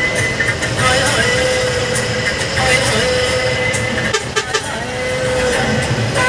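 Engine and road noise of a moving bus, with a song with a singing voice playing over it.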